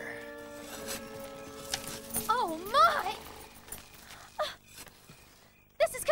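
Film soundtrack: held notes of background score, with a wavering, wailing call rising and falling about two seconds in and a shorter one later.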